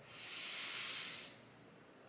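A woman's deep inhale filling the lungs, a soft airy hiss that lasts about a second and a half and then stops.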